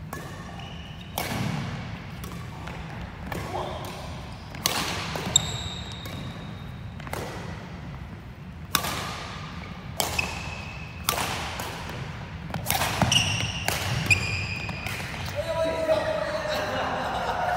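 Badminton rally in a large, echoing hall: sharp cracks of rackets hitting the shuttlecock about once a second, about a dozen in all, with short high squeaks of court shoes on the wooden floor between hits.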